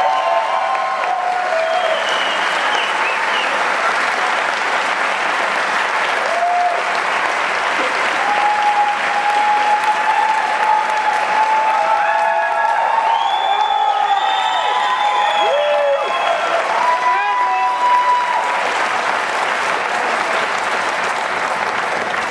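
A large crowd applauding steadily for about twenty seconds, with scattered shouts and whoops from audience members over the clapping, thickest around the middle of the applause.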